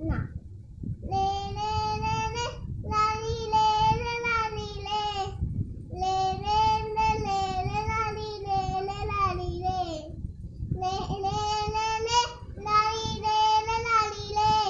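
A young child singing a Bengali song unaccompanied, in five long held phrases with short breaks between them for breath.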